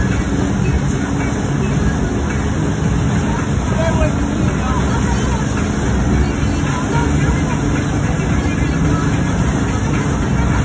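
A wakesurf boat running steadily under way: the engine and the churning wake make a dense, steady low noise, with faint voices over it.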